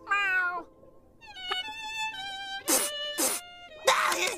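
A cartoon cat-like meow, then a short melody of held bowed cello notes. Near the end come two short swishes.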